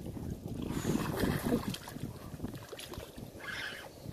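Wind noise on the microphone with light water splashing as a hooked largemouth bass is drawn through the shallows to the bank.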